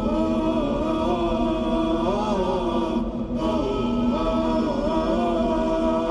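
Unaccompanied vocal chant with layered, held notes and a slowly gliding melody, briefly thinning about halfway through.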